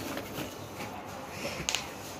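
Cardboard being handled as a smaller box is lifted out of a larger one: soft scraping and rustling, with a couple of brief crackles near the end.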